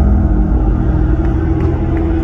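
Live concert music from the stage PA, heard from among the audience: a loud, deep, sustained bass drone with held low notes and no vocals.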